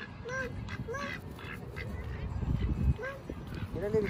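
Domestic ducks quacking: about four short quacks spread across a few seconds, with a low rumble on the microphone about two and a half seconds in.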